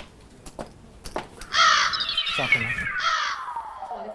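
Comedy sound effect: two loud, harsh crow caws about a second and a half apart, over a long whistle that slides steadily down in pitch. Light clicks and knocks come before it in the first second.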